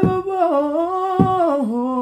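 A voice humming a long, held tune that steps down to a lower note in the second half, with two short low thuds.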